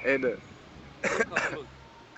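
Three short bursts of a voice, one at the start and two about a second in. No words can be made out.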